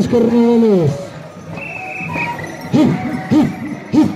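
Carnival voices singing and calling out. A held note slides down in pitch about half a second in, and short rising-and-falling whoops come near three seconds in and again at the end. A brief high steady tone sounds in between.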